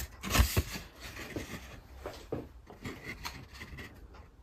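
Cardboard sleeve of a ready-meal box being handled and turned in the hand, rubbing and scraping. The loudest handling comes in the first half second, followed by faint scattered rustles and small knocks.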